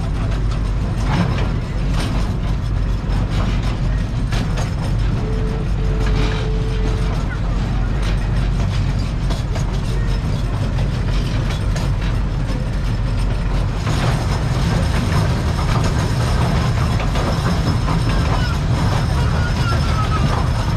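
Small train ride running along its track: a steady rumble with continual clicking and rattling from the wheels and cars.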